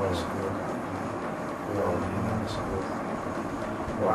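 Faint speech, a voice talking softly in the background, over a steady low hum and even background noise.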